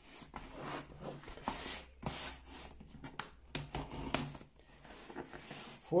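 Hands handling and turning over a cardboard shipping box: irregular rubs, scrapes and taps on the cardboard.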